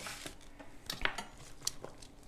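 Vegetable pieces being spread by hand over a foil-lined metal sheet pan: soft foil rustle with a few light clicks and taps, the loudest about a second in.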